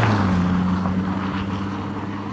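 Jaguar F-Pace SUV passing close by on a snowy road, its engine note dropping slightly in pitch just after it passes, then fading as it drives away.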